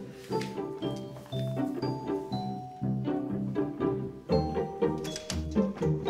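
Background score music: a light run of short plucked string notes at a steady pace, with a deeper bass line coming in more strongly about four seconds in.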